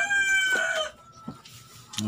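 A rooster crowing: the tail of one held, high call that ends about a second in.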